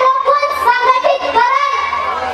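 A girl's high-pitched voice declaiming loudly into a microphone in a sing-song delivery, holding long level notes.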